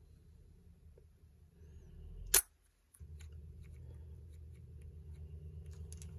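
A Nikon DSLR's shutter and mirror close with one sharp click about two seconds in, ending a five-second exposure. Under it runs a low, steady hum.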